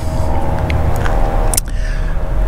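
A steady low rumble with a faint steady hum above it, broken by one sharp click about one and a half seconds in.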